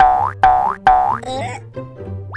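Three quick cartoon boing sound effects about half a second apart, each a springy tone that slides down in pitch, over background music.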